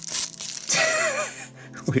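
A sticker label being peeled and torn off a plastic capsule, with crinkling and tearing crackle in the first half second.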